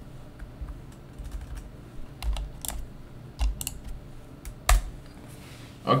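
Computer keyboard typing: irregular keystrokes with short pauses between them, and one louder key strike about three-quarters of the way through.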